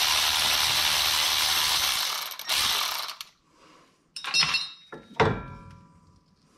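A Milwaukee M12 cordless electric ratchet runs steadily for about two seconds, then briefly again, spinning the brake hose's banjo bolt out of the rear brake caliper. A few light metal clinks follow near the end as the bolt and hose fitting come free.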